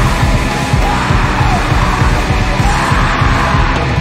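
Heavy, fast band music with yelled vocals over a dense wall of guitar and rapid drumming.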